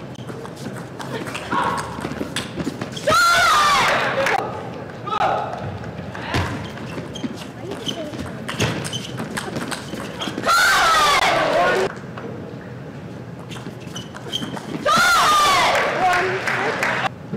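Table tennis rally: a celluloid-type ping-pong ball clicking off rackets and table, broken three times by a player's loud shout after a point is won, each about a second long and falling in pitch: about 3 s in, about 10 s in, and near the end.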